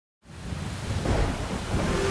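After a brief silence, a thunder-like rumble of noise fades in and grows steadily louder: a cinematic rumble effect.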